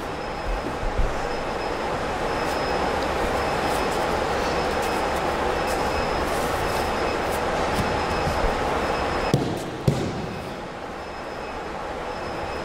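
Aikido partners' bodies and feet hitting a padded gym mat as throws are taken, a few dull thumps over a steady rushing background noise. The two sharpest thumps come close together about two seconds before the end.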